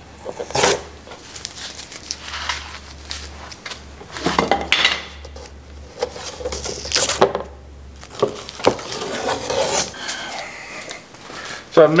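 Tape being peeled off the edges of a cured epoxy-and-wood panel: irregular ripping and scraping noises, with a few knocks of the panel on the workbench.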